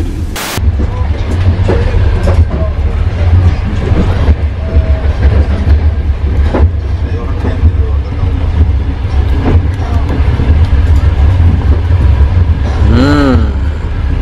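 Passenger train running, heard inside a sleeper compartment: a loud, steady deep rumble with occasional knocks and rattles. A short burst of TV-static hiss sounds just after the start.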